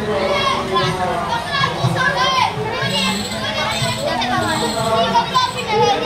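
A group of children chattering and calling out, several high voices overlapping one another without a break.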